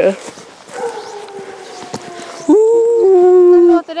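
A dog howling: a faint, slowly falling howl, then a louder, long, steady howl starting about two and a half seconds in and lasting over a second.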